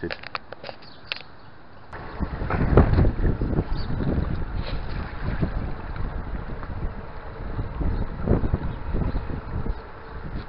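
Wind buffeting the camera microphone, a loud, uneven low rumble that starts about two seconds in.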